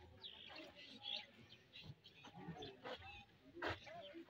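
Faint small-bird chirps, short high notes repeating irregularly, with a sharp knock near the end.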